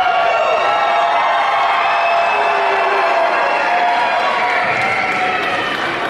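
Arena crowd cheering loudly, many voices yelling and holding long shouts together.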